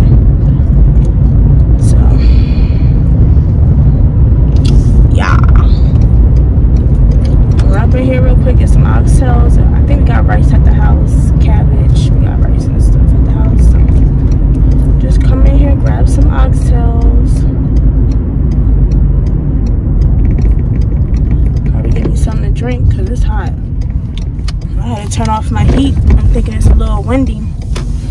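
Car being driven, heard inside the cabin: a loud, steady low road and engine rumble.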